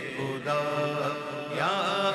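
A solo male voice reciting an Urdu hamd in a chanted, melismatic style, holding long drawn-out notes, with a wavering ornamented turn in pitch near the end.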